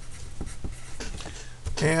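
Pencil writing on a sheet of graph paper: a run of short, light strokes as a word is written out.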